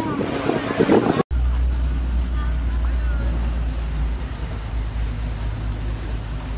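A few voices over wind and water noise, cut off abruptly just over a second in; then the steady low drone of a small motorboat's outboard engine running close by.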